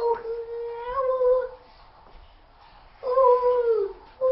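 A child's voice making long drawn-out 'ooo' calls. One call is held for about a second and a half with a small lift in pitch. After a pause, a shorter call slides downward in pitch near the end.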